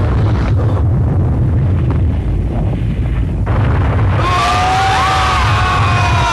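Cartoon sound effects: a steady deep rumble, joined about four seconds in by a rush of hiss and several wavering whistling tones.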